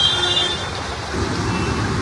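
Road traffic on a flooded street: vehicles driving through water, heard as a steady wash of noise with engines under it.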